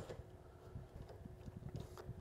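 Faint, irregular light clicks and rubbing from a hand-turned screwdriver with a Torx bit backing out a long mirror-mounting bolt, over a faint steady hum.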